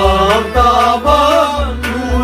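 Kashmiri Sufi song: a man sings a long, wavering line over a sustained harmonium drone, with a steady drum beat about twice a second.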